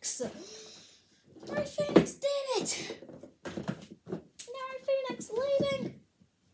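A child's voice calling out in short wordless bursts, its pitch rising and falling, in two stretches with a brief pause between them.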